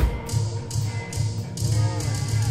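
Live indie-pop band music heard from the crowd. A drum hit opens it, then the drum beat pauses briefly while the bass line carries on.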